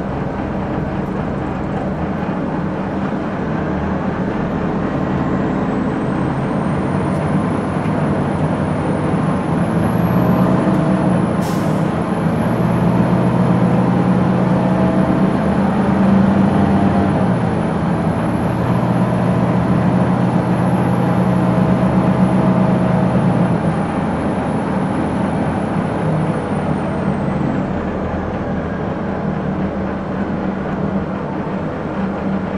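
2001 Gillig Phantom transit bus's Detroit Diesel Series 50 inline four-cylinder diesel idling steadily while the bus stands still, running a little louder for about fifteen seconds in the middle. A faint high whine comes in early and fades near the end, and there is a single sharp click about eleven seconds in.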